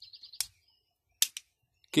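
A sharp click about half a second in and a quick double click just past the middle as the multitool's main knife blade is handled, over faint, fast, even chirping that stops within the first half second.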